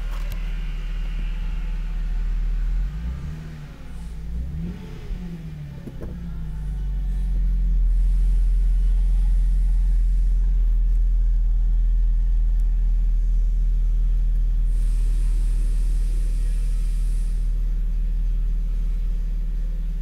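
2007 GMC Acadia's 3.6-litre V6 idling steadily at about 1,000 rpm in Park, a low even hum. A few seconds in, the sound dips and wavers briefly before settling back to a steady idle.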